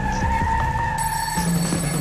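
Dramatic TV-intro music with a sound effect laid over it: a steady, high squeal like a car skidding, which stops shortly before the end.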